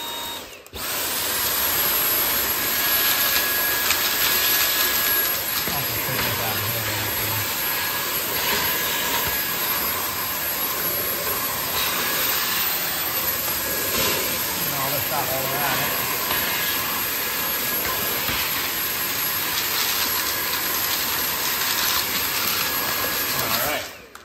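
Cordless stick vacuum with a crevice tool running, a steady rushing hiss with a faint high whine, switched on about a second in and off just before the end. It is sucking dust out of the gap between laminate floor planks.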